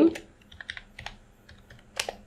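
Typing on a computer keyboard: a handful of separate, unevenly spaced keystrokes as a word is typed, the last one the sharpest. A man's voice trails off at the very start.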